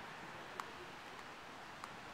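Faint, steady outdoor background hiss in a park, with two soft clicks about a second apart.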